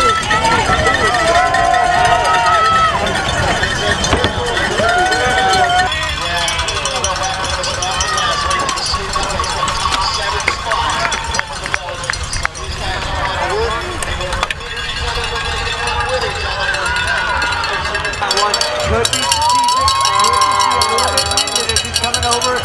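Race-side spectators shouting and cheering while cowbells clang, the usual noise of a cyclocross crowd urging riders on.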